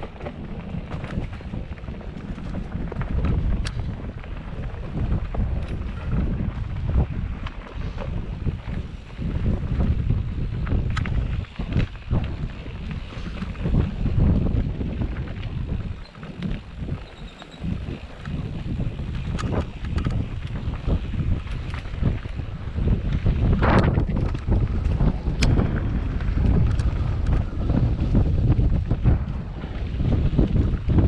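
Wind buffeting the microphone of a mountain bike rolling down an enduro trail, with sharp knocks and rattles from the bike over rough ground now and then.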